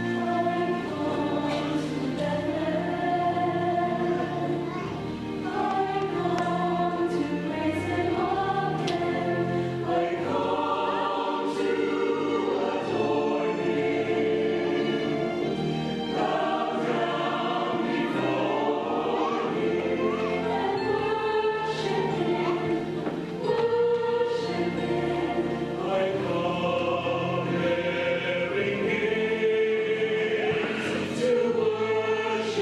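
A choir singing a Christmas cantata song with instrumental accompaniment, many voices together over sustained low accompanying notes.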